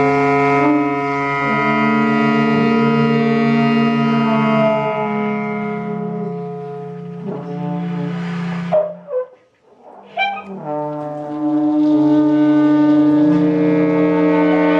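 A small jazz ensemble's horns (trumpet, trombone, saxophones and clarinet) play long held chords over double bass. About nine and a half seconds in, the band stops almost to silence for a moment, then the horns come back in with another sustained chord.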